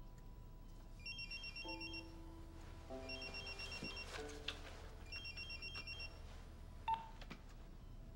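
Pager alert: three bursts of rapid, high electronic beeping, each about a second long, over soft sustained music notes, with a short sharp click near the end.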